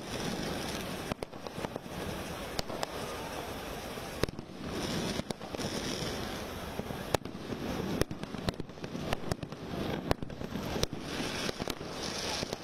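Fireworks on a burning Ravana effigy going off: spark fountains rush continuously, with many sharp firecracker bangs that come faster in the second half.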